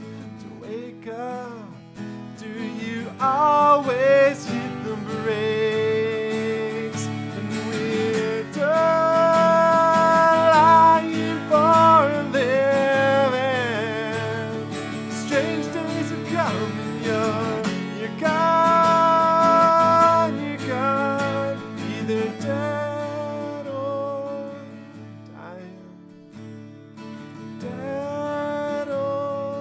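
A man singing with a strummed acoustic guitar, holding long notes that slide between pitches over steady strumming.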